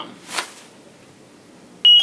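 A short breathy hiss about half a second in, then low room noise. Near the end comes a sudden, loud, high-pitched steady tone that rings on and fades.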